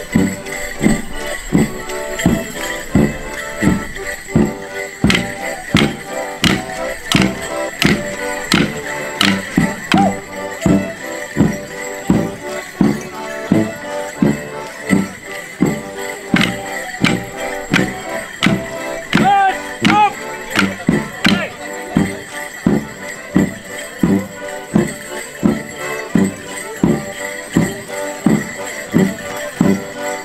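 Border Morris dance tune played live by a band, with a steady drum beat about twice a second. Wooden morris sticks clack together in runs of sharp knocks, and dancers' bells jingle.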